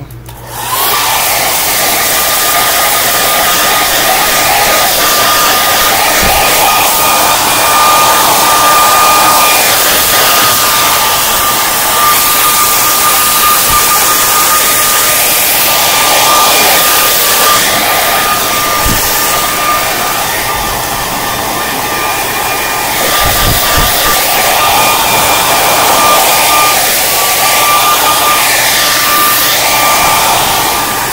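Handheld hot-air blower switching on under a second in and running steadily, a rush of air with a thin high whine, as it heats and shrinks clear plastic shrink wrap.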